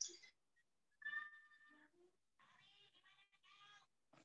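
Near silence broken by a faint, short pitched call about a second in, then a fainter, longer pitched call from about two and a half seconds, both with the sound of a meow-like animal call.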